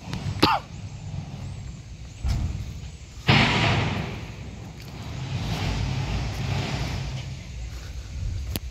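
Low, steady engine rumble of heavy construction machinery, with a sharp click and brief squeak near the start and a loud hissing rush a little after three seconds in that fades over about a second.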